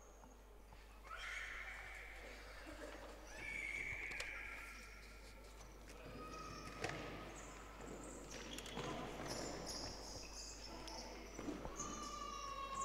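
Faint sounds of indoor futsal play on a wooden parquet floor: short high-pitched squeaks and calls, with a few sharp ball kicks.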